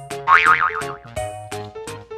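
Light background music of short plucked notes, with a cartoon 'boing' sound effect that wobbles in pitch starting about a third of a second in.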